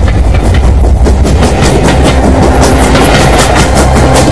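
Loud dramatic soundtrack effect: a heavy deep rumble with a fast, even clatter running over it, starting suddenly.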